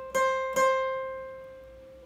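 Steel-string acoustic guitar: one high note, fretted at the thirteenth fret, is picked twice about half a second apart. It is then left ringing and slowly fading.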